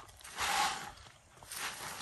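Wood-chip mulch rustling and crunching under gloved hands as it is spread around a young tree, in two short bursts about a second apart.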